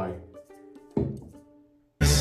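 A spoken word trails off, then a short held musical tone. About a second in comes a single dull hit that rings briefly and dies away to silence.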